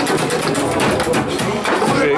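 Foosball table in play: rods being jerked and spun, the figures and rod bumpers clacking and the ball knocking, a rapid, irregular clatter.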